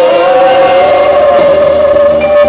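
Live band music in a large arena, loud and continuous, with long held notes.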